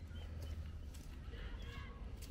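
Footsteps at a walking pace on a paved path, over a steady low rumble.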